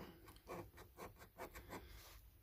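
Faint, quick scrapes of a round disc rubbing the silver scratch-off coating from a scratchcard panel, several short strokes in a row.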